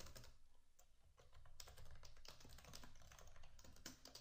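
Faint typing on a computer keyboard: a run of quick key clicks, with a short pause about a second in.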